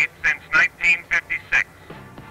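A man's voice, thin and tinny as through a small speaker, talking in short bursts with the words not made out; it drops off near the end.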